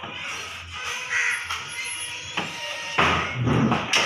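A motorcycle being wheeled and turned by hand, with a loud scraping clatter about three seconds in that lasts nearly a second. A short bird call sounds about a second in.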